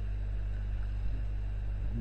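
Steady low hum with a faint hiss underneath, the background noise of the voice recording, unchanging throughout.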